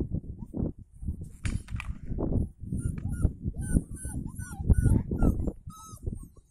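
Young puppies yipping and squealing in rough play: a run of short, high yips about three a second through the second half. Low thumping and rumbling sounds underneath.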